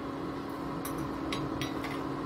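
Steady electrical hum of an induction cooktop running under the pan, with a few faint soft ticks about a second in.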